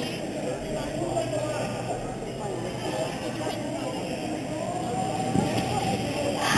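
Indistinct chatter of many voices echoing in a large sports hall, with a couple of light thumps near the end.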